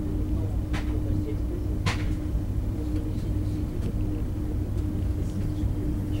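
Passenger train rolling along the track, heard from inside the carriage: a steady rumble with a constant hum, and two sharp clicks about a second apart near the start as the wheels pass over rail joints or points.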